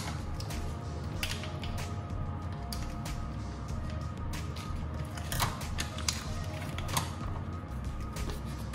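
A plastic packet of fish fillets being handled and crinkled, with a few sharp clicks, over steady background music.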